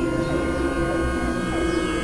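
Dense experimental electronic drone music: many steady held tones stacked over a low rumble and a strong hum, with short falling pitch glides dotted through.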